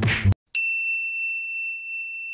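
A single high, bell-like ding sound effect that holds one steady pitch for about two seconds and then cuts off. Just before it, background music stops abruptly with a brief noisy swish.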